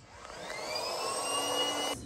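Small electric motor starting up: a whine that rises in pitch for about a second and a half, then holds steady.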